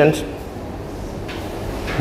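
The tail of a man's spoken word at the very start, then a pause of faint, steady room noise until speech resumes.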